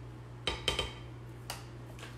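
A spoon clinking and scraping against a glass mixing bowl as salsa is added and stirred into mashed avocado: a quick cluster of clinks about half a second in, then one more a little later.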